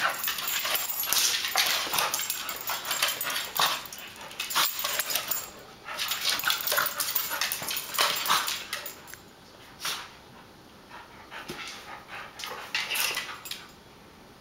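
A pitbull and a small fox terrier-yorkie mix play-wrestling on a tile floor, with irregular bursts of dog vocalising and scuffling. The sounds quieten for a few seconds about two-thirds of the way through, then pick up again.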